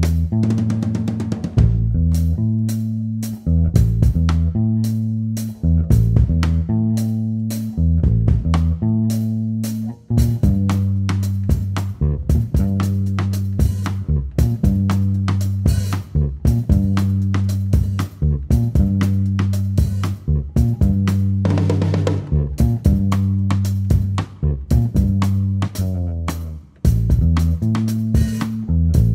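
Live electric bass guitar and drum kit playing a groove together, the bass notes strong and the drums keeping a steady beat.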